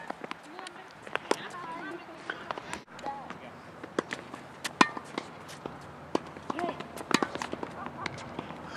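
Tennis balls being struck by racquets and bouncing on a hard court: sharp, irregular pops throughout, the loudest about five seconds in, with faint distant voices between them.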